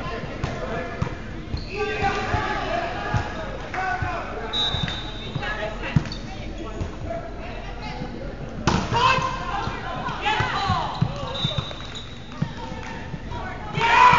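Indoor volleyball play in a large gym: repeated thuds of the ball being hit and bouncing on the hardwood floor, mixed with players' voices calling out. The voices grow loud near the end as the rally finishes.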